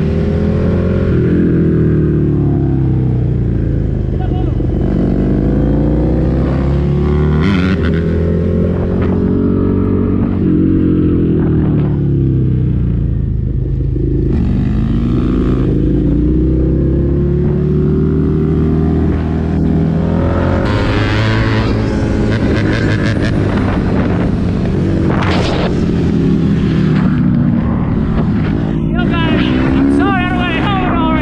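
Motorcycle engine accelerating through the gears while riding, its pitch climbing and then dropping at each shift every couple of seconds.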